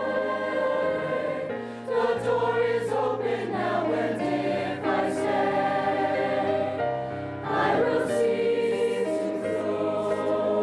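Combined high school choir of mixed male and female voices singing held chords. The sound dips and swells louder again about two seconds in and near eight seconds.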